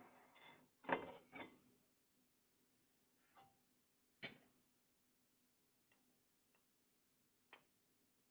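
Light glass clinks and taps from a glass teapot being handled and lifted off its glass tea-light warmer. A few soft sounds come early, then single sharp clicks spaced a second or more apart, the loudest about four seconds in, between stretches of near silence.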